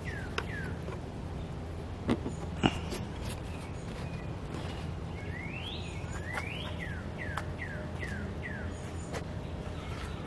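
Birds calling: short falling chirps, two rising calls about halfway, then a run of falling chirps about two a second, over a steady low background hum. Two soft knocks sound a couple of seconds in.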